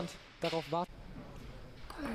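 A single short spoken word about half a second in, then faint background noise.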